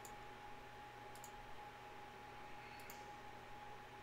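Three faint computer-mouse clicks, spaced a second or more apart, as an arc is placed in a CAD sketch, over a faint steady hum.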